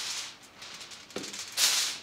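Sheet of aluminium foil rustling and crinkling as it is handled and pulled over a baking dish, with a short, louder crinkle near the end.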